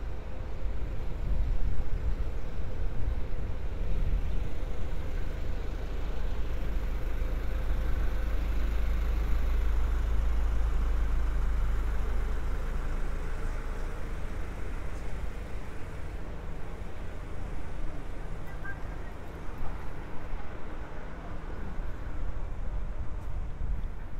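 Street traffic ambience: a low motor-vehicle engine rumble that builds to its loudest around the middle and eases off toward the end.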